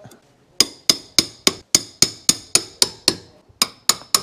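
Estwing hammer striking the head of a mini crowbar in a steady series of sharp metal-on-metal taps, about three to four a second, each with a short ring, with a brief pause near the end. The taps drive a lead clip in under the coping stones.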